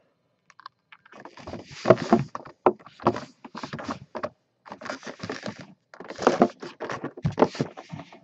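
Hands handling a clear plastic mini-helmet display cube and its cardboard box: irregular scraping, rustling and light knocks of plastic and card.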